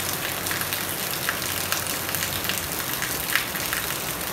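Heavy rain falling steadily on a wet, puddled concrete yard, a continuous hiss dotted with small splashes of individual drops.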